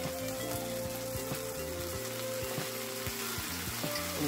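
Thin-sliced beef strips sizzling steadily in hot oil in a cast-iron skillet as soy sauce is poured over them.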